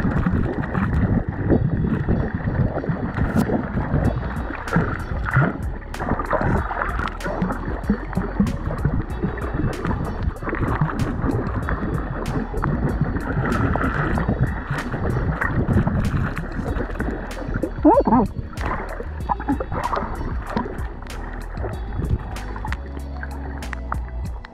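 Muffled, rough water noise picked up by a camera held underwater, swelling and falling irregularly and cut off above a fairly low pitch. Background music with a steady ticking beat plays over it.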